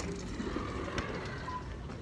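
Low steady background rumble while walking through automatic sliding entrance doors, with a single sharp click about a second in.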